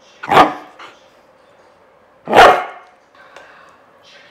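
Siberian husky barking twice, about two seconds apart, while playing with a plush toy.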